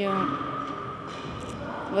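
A young woman's speech breaking off in a hesitant pause: her voice trails off just after the start, then a stretch of hall background noise with a faint steady high tone, and she starts speaking again at the very end.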